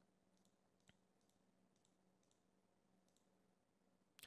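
Near silence, with a few very faint clicks; the clearest comes about a second in.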